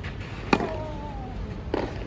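Tennis balls being struck with rackets during a practice rally on a clay court: a sharp hit about half a second in, followed by a softer hit near the end.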